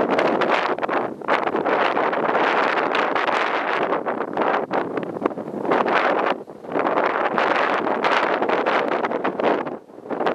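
Strong, gusty wind buffeting the microphone: a loud rushing noise that surges and drops, with brief lulls about six and a half seconds in and near the end.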